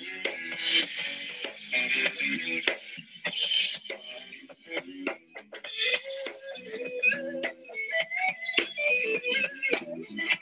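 Rock band rehearsal recording playing back: a drum kit with crashing cymbals at about one, three and a half and six seconds in, under electric guitar.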